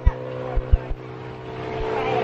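A steady motor hum made of several even, unchanging tones, with a few short low thumps.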